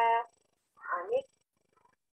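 A woman's voice: the end of a spoken word, then one short vocal sound with a rising and falling pitch about a second in, with silence between and after.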